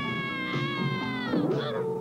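A cartoon character's long, high-pitched scream as he falls, held for about a second and a half before breaking off, over background music.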